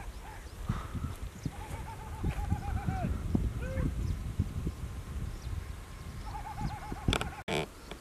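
A bird calls twice, each time a quick run of short repeated notes, over a low rumble of wind on the microphone.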